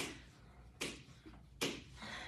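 Two short taps, less than a second apart, of sneakered feet planting on a hard floor during step-back lunges with knee drives.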